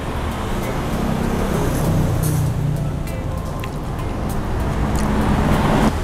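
Road traffic passing: a steady low rumble of vehicle engines that swells about two seconds in and again near the end, with a few faint light clicks over it.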